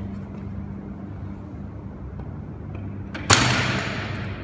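A barbell loaded with over 200 kg of rubber bumper plates crashes to the gym floor once, a little over three seconds in, when the paracord holding it snaps under the load; a low steady hum runs underneath.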